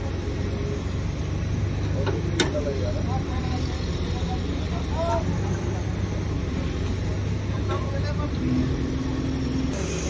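An engine runs with a steady low drone under background voices, and a single sharp click sounds about two and a half seconds in.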